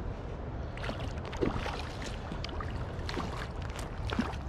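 A hooked trout splashing at the surface as it is reeled in close to the bank: a scatter of quick, irregular splashes over a steady low rumble.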